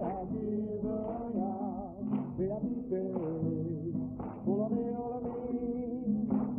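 A man singing long, held notes with a wavering vibrato over a steady instrumental accompaniment.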